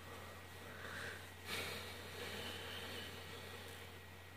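Faint breath out through the nose from a person who has just been laughing, coming in sharply about a second and a half in and trailing off, over a low steady hum.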